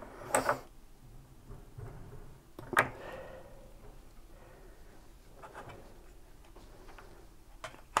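Quiet handling of small plastic model-kit parts and a plastic glue bottle on a cutting mat, with two sharp clicks, one just after the start and a louder one a little before three seconds in, and faint rubbing and tapping in between.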